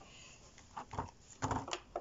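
Light rustling and clicking of foil booster packs and a clear plastic tray being handled, a few short crinkles and taps in the second half.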